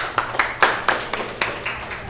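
Hand clapping in applause, about four sharp claps a second.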